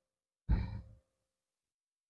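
A woman's short sigh, a brief breathy exhale about half a second in that fades out within half a second.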